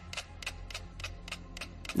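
Ten mechanical pendulum metronomes set to the same tempo ticking together on a shared swinging platform, about three to four sharp clicks a second. The ticks fall nearly in step as the metronomes pull each other into sync through the platform's motion.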